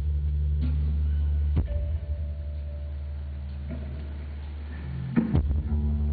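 Live band music in an instrumental passage: sustained low notes under guitar chords struck every second or two. The low notes drop back about a second and a half in and swell again near the end.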